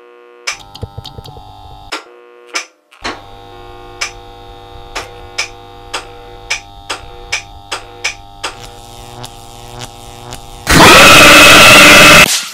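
Eerie synthesized horror-intro drone: sustained steady tones with a low hum and scattered sharp clicks, then a loud burst of harsh glitch static about ten and a half seconds in.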